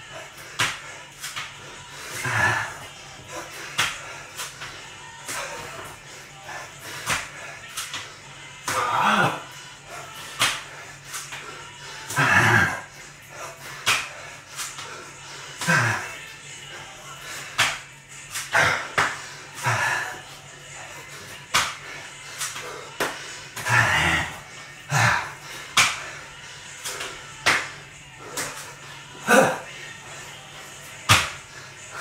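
Burpees on a tiled floor: hands and feet slap down on the tiles over and over, with hard exhaled breaths and grunts, one rep every two to three seconds.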